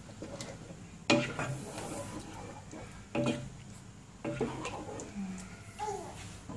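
Wooden spoon stirring chicken pieces in a thick curd gravy in a non-stick pan, scraping the pan, with three sharper knocks against it about one, three and four seconds in.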